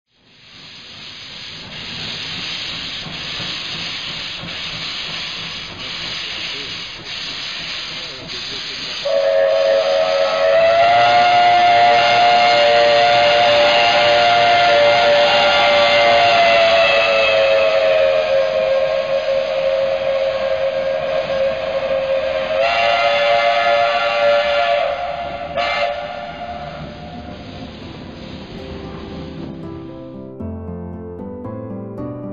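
Steam locomotive hissing steam, then its whistle sounding one long two-tone blast of about thirteen seconds that dips slightly in pitch partway through, followed by a shorter blast of about two seconds.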